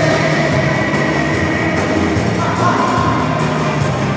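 A live band with a horn section, electric guitars and drums playing loud amplified music, with long held notes.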